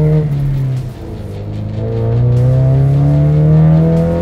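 2015 Ford Mustang's 2.3-litre EcoBoost turbo four-cylinder, with a Borla downpipe, Borla ATAK cat-back exhaust and a Cobb tune, accelerating hard under load. The engine note dips about a second in, then climbs steadily in pitch as the revs rise.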